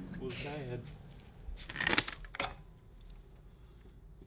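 A few sharp metallic clicks and clinks about two seconds in, as the old centrifugal clutch and its chain are worked off a go-kart engine's crankshaft, followed by quieter handling noise.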